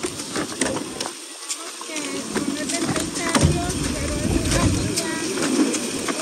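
Water hissing from a hose nozzle over a celery-packing table, with clicks and rustles of celery stalks and plastic sleeves being handled, and faint voices of workers nearby. A low rumble comes in about three seconds in and lasts a couple of seconds.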